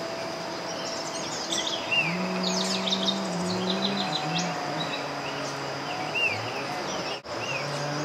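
Wild birds chirping and giving short down-slurred call notes, busiest about two to four seconds in and again near six seconds. Beneath them runs a steady high-pitched insect buzz and a low hum.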